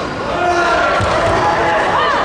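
A voice shouting, held for about a second, over a few dull thuds of bare feet on the foam mat as two karateka exchange in a kumite bout, in a reverberant hall.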